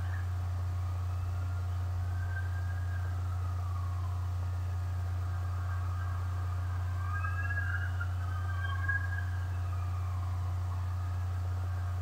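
A steady low hum, with two faint drawn-out tones that slowly glide up and then down, one a few seconds in and one past the middle.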